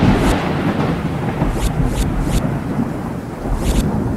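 A deep, loud thunder-like rumble that slowly dies away, with a few short crackles over it.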